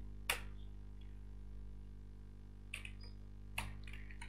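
A few separate, sharp computer keyboard keystrokes, spread out with pauses between, over a steady low hum.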